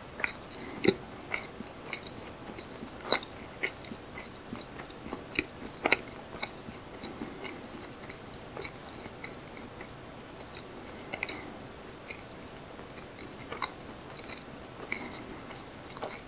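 A close-miked mouth chewing soft janggijitteok, a naturally fermented rice cake, giving a steady run of small, quick mouth clicks several times a second. A few sharper clicks come about three and six seconds in.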